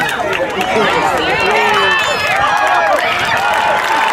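Sideline crowd of many overlapping voices yelling and cheering as a ball carrier runs into the open field, holding loud throughout.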